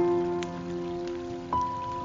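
Soft, slow guitar music: a chord rings out at the start and a new note is struck about a second and a half in, over a steady hiss of falling water.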